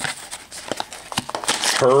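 Foil blind-bag pouch crinkling with irregular crackles as it is handled in the hands.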